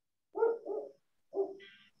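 A small dog barking three short times in the background.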